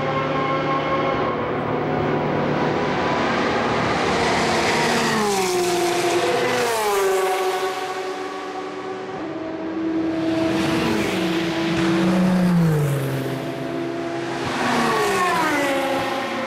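Endurance race cars passing one after another at full speed, their engines high-pitched and loud. Each engine note drops in pitch as the car goes by, with passes about a third of the way in, two-thirds of the way in and near the end.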